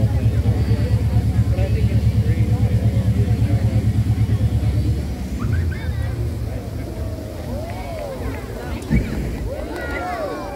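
Crowd of spectators talking under a loud, low, rapidly pulsing rumble that stops about halfway through. A single thump comes near the end.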